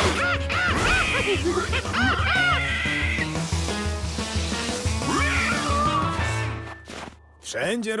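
Cartoon score music with a steady repeating bass line, with high rising-and-falling squeals of a cartoon pig over it in the first three seconds and again briefly about five seconds in. The music stops about six and a half seconds in.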